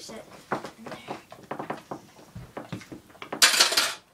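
A metal utensil stirring and scraping through a thick food mixture in a glass baking dish, with repeated light clinks against the glass. Near the end comes a short, louder rushing noise.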